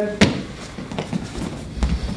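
Footsteps and light knocks of two people moving on a training floor, with a sharp click just after the start, a few small ticks, and a low thump near the end.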